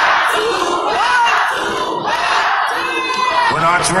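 Concert crowd cheering and shouting, many voices at once with individual high whoops and screams rising out of the din.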